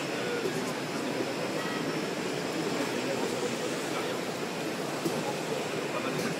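Steady mechanical running noise of packaging machinery, mixed with indistinct background voices of an exhibition hall.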